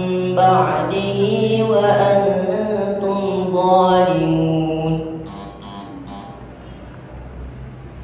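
Qur'an recitation in the melodic tilawah style: a single voice holding long, ornamented notes that glide between pitches, ending about five seconds in. A quieter pause follows, with a few soft clicks.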